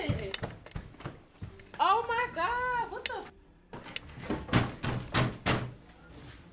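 A fist banging on a wooden door, several heavy blows in the second half, after a raised voice.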